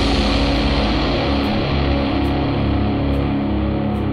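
Instrumental psychedelic stoner rock: distorted guitars and bass hold a sustained drone with the drums dropped out, leaving only faint light taps about once a second.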